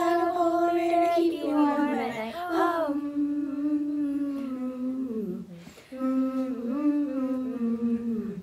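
Girls' voices singing a long held "oh", then humming two slow phrases, each dropping in pitch at its end.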